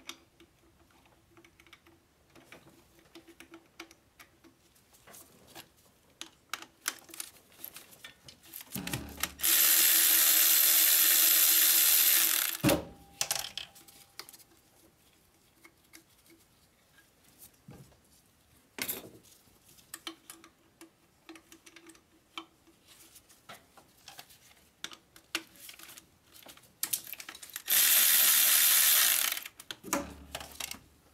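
Cordless electric ratchet running in two bursts of about two to three seconds each, spinning out the turbocharger hold-down bolts on a Mercedes Sprinter's 3.0-litre diesel. Scattered light clicks and taps of tools on metal come in between.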